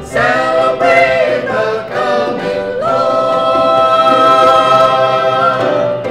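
Small mixed vocal group singing in close harmony: a few short sung notes, then a chord held for nearly three seconds from about halfway through.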